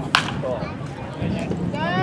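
A wooden baseball bat hitting a pitched ball: one sharp crack just after the start. Players' shouts follow near the end.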